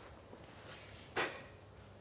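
A single short knock about a second in, against quiet room tone.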